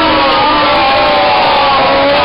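Several people crying out together in one long, loud, drawn-out note, their voices held at several pitches at once.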